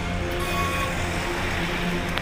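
Steady road-traffic noise with vehicle engines running, mixed with music.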